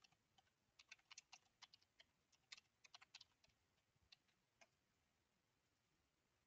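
Faint typing on a computer keyboard: a quick, uneven run of key clicks that stops about four and a half seconds in.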